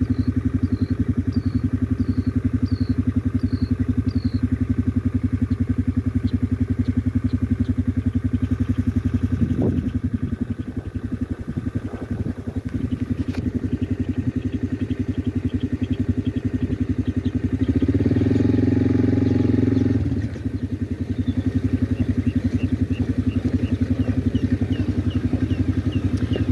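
An engine running steadily with an even low pulse, briefly louder about two-thirds of the way through. A bird chirps a quick series of short notes at the start and again near the end.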